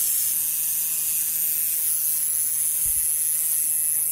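Electric tattoo machine buzzing steadily as it works on a pig's skin.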